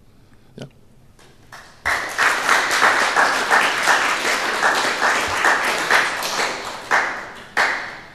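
An audience applauding. The applause starts about two seconds in, after a short quiet, and dies away near the end with a few last claps.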